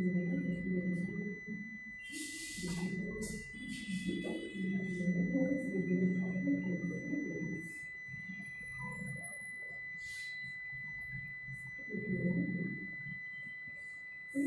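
Indistinct voices talking in several short stretches, with a steady high-pitched whine underneath.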